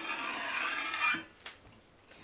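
Piping bag rubbing and rustling under the hand as icing is squeezed out in a straight line, stopping a little after a second in.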